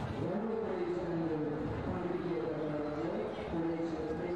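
A person's voice in drawn-out, held tones that glide up and down, several in a row, over a steady background murmur.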